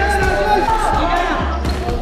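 A basketball being dribbled on an outdoor concrete court, its bounces heard under background music and a voice.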